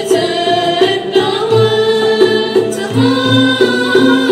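A student ensemble of ouds, mandolins and violin playing a melody together while girls sing in a group along with it.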